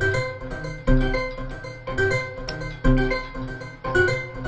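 Modular synthesizer voice playing notes quantized by a Q171 Quantizer Bank to a minor scale, a new note about once a second, each starting strongly and fading.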